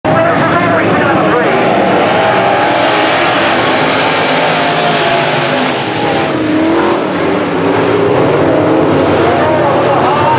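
A pack of dirt-track sport modified race cars with V8 engines running loud together, their pitches rising and falling as they rev through the turns and pass by.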